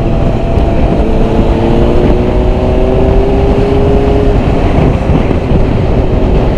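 Honda CBR600RR's inline-four engine running at a steady cruise under heavy wind noise; its pitch climbs slowly for a few seconds as the bike gently accelerates, then holds.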